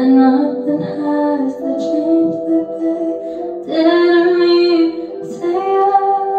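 A girl singing a slow melody into a handheld microphone, holding long notes that step from pitch to pitch every second or two.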